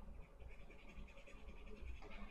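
Faint soft brush strokes of a thin paintbrush dabbing thinned oil paint onto paper, a run of small rasps.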